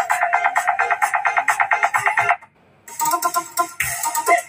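Music playing through a homemade mini amplifier built from the transistor of a dead compact fluorescent lamp, driving a large woofer and a small tweeter. Rapid repeated electronic notes, about eight a second, stop about two and a half seconds in; after a brief silence the music starts again.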